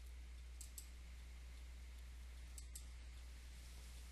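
Faint computer mouse clicks: two quick pairs of short clicks, the first pair under a second in and the second about two and a half seconds in, over a steady low hum.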